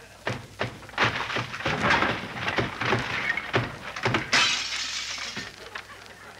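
Radio sound-effects crash of a door being broken down: a series of heavy thuds and crashing, then a loud shattering crash about four seconds in that dies away.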